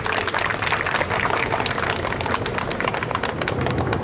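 Applause from a crowd and from the people on stage: many hands clapping in a dense, steady run.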